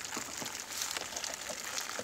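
A pause with only a faint, steady background hiss and no distinct event.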